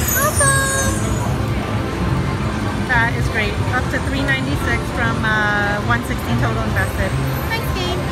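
Casino floor din: electronic slot machine chimes and jingles over a steady low hum, with the voices of people nearby.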